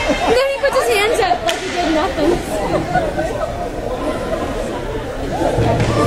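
Indistinct chatter of spectators talking in an ice arena, with several voices overlapping. A few sharp clicks sound about a second in.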